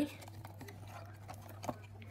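Cardboard packaging rubbing and scraping faintly as a small cardboard washi tape dispenser is slid out of its box, with one sharp click about 1.7 seconds in. A low steady hum sits underneath.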